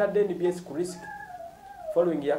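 A man's voice speaking briefly, then a faint, drawn-out high wavering call lasting about a second that sags in pitch toward its end.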